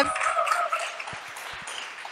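Audience applause in a hall, fading away over about two seconds.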